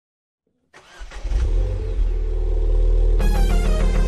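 Ford Fiesta ST's engine starting about a second in and running with a deep steady note. Synth theme music with a rapid pulsing beat comes in over it about three seconds in.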